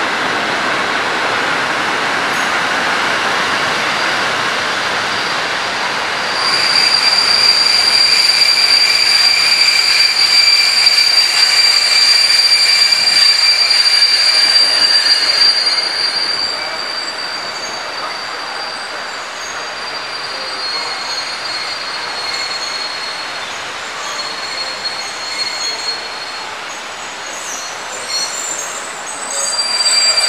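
Passenger train coaches rolling along the platform, steel wheels squealing on the rails with steady high-pitched squeals. The squealing grows loud about six seconds in, eases off at about sixteen seconds, and continues more quietly in short squeals until the end.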